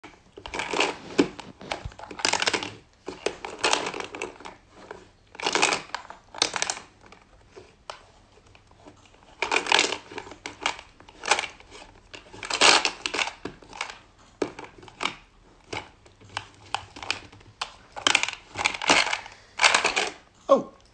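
Plastic shape-sorter ball being turned and handled, with plastic shapes rattling and clacking inside and against it, in irregular bursts.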